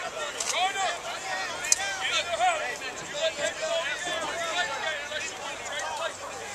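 Several people talking and calling out at once on a football sideline, overlapping voices with no clear words, and a single sharp click about a second and a half in.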